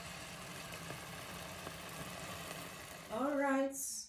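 Steady low hum and hiss of kitchen background noise, then a woman's short spoken sound about three seconds in that cuts off abruptly at the end.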